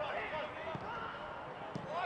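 Footballers shouting on the pitch, with two dull thuds of the ball being kicked, one under a second in and one near the end.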